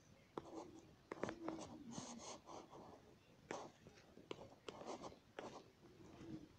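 Faint rubbing strokes and a few sharp taps of writing on a tablet's touchscreen, several short strokes each lasting under a second.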